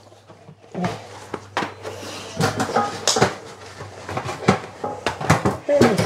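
Irregular clicks and light clanks of a dog nosing into an open mailbox and mouthing a bean bag out of it, the box knocking and rattling as he works.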